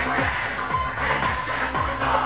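Live electro-industrial music played loud through a concert PA, with a steady kick drum about three beats a second under dense synths. It sounds dull and compressed, with no highs, as heard from within the crowd.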